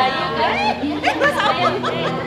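Several people's voices chattering excitedly at once over live guitar music holding steady tones.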